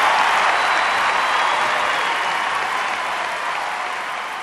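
Crowd applause, slowly fading.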